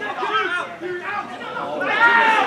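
Speech only: voices talking, with no other sound standing out.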